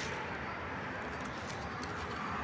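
Faint outdoor background with a bird calling softly.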